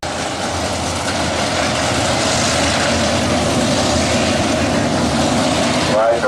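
Engines of a field of dirt-track modified race cars running together around the oval, a steady dense engine sound that grows a little louder over the few seconds.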